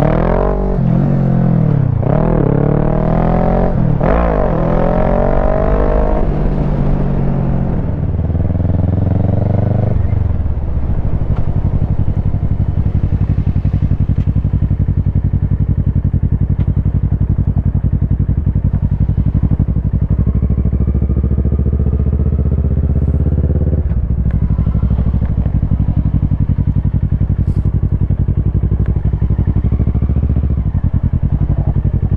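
Kawasaki Versys 650 parallel-twin engine pulling hard up through the gears, its pitch climbing and dropping back at each upshift, about three times. From about ten seconds in it settles into a steady low-rev run.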